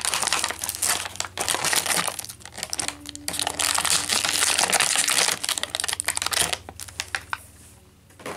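Clear plastic packaging crinkling as it is handled and pulled open, dense crackling for most of the time, thinning to a few scattered crackles near the end.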